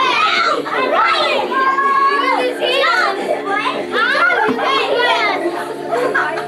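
Several children's high voices chattering and calling out over one another.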